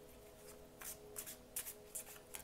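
Tarot cards being shuffled by hand: a few brief, soft rustles of cards sliding against each other, faint, mostly in the second half.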